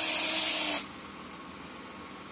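WLtoys 16800 RC excavator's electric arm drive running with a high, hissing whine as the stick extends, then cutting off suddenly under a second in when the lever is released.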